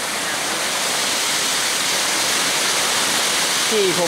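Waterfall pouring into a rocky pool: a steady, unbroken rush of falling water.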